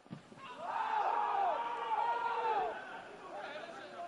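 Voices shouting or chanting from the stadium crowd in rising and falling phrases, loudest from about a second in and dropping away before the end.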